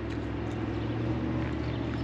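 A steady low mechanical hum, even in level and pitch throughout.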